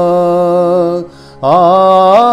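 A man's voice singing a devotional Urdu kalam in a slow chanting style. He holds one long vowel, breaks off about a second in, then takes up a new note with an upward slide and holds it.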